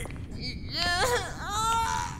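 High-pitched creature whimpering: two wavering cries, one about a second in and a longer, held one near the end, over a low rumble.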